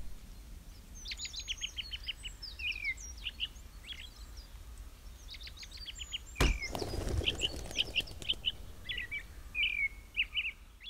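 Small songbirds chirping and calling over and over, short high notes and quick downward slurs. About six and a half seconds in, a sudden thump followed by a brief rush.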